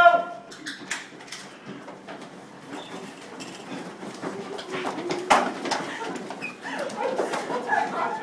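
A man making wordless, animal-like grunts and yelps while rushing and flailing about, with scattered footfalls and thumps; a sharp thump about five seconds in, and the vocal sounds grow louder near the end.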